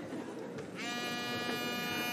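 Mobile phone buzzing with an incoming call: one steady, even buzz starts a little under a second in and lasts just over a second.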